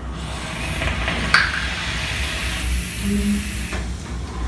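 Steady hiss of two vape mods being drawn on, air pulling through the atomizers as the coils vaporise the e-liquid; it stops just before four seconds in. A single sharp click sounds about a second in.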